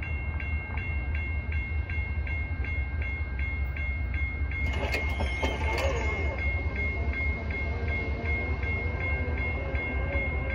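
Grade-crossing warning bell ringing steadily, about three dings a second, over the low rumble of a freight train approaching in the distance. A short clatter comes about five seconds in.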